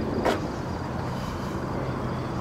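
Steady low rumble of vehicles running, with one short sharp knock about a quarter second in and a low steady hum joining about a second in.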